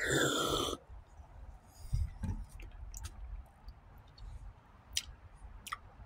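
A person taking a sip from a plastic drink bottle: a short, loud slurping gulp at the start, then quiet swallowing and mouth sounds with a few small clicks.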